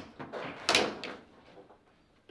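Foosball table in play: a few light clacks of the ball and plastic men, then one loud, sharp crack a little under a second in as the ball is struck hard, fading away after.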